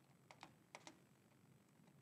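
Near silence: quiet room tone with four faint, short clicks in the first second.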